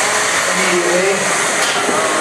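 Beetleweight combat robot spinning weapon whirring steadily, with voices faintly underneath.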